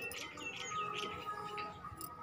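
Small birds chirping: a quick run of short, falling chirps over a thin steady tone.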